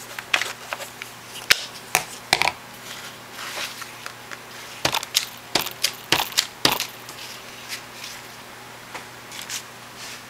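Paper and craft supplies handled on a tabletop: a run of sharp taps and crinkles, bunched around two seconds in and again from about five to seven seconds in.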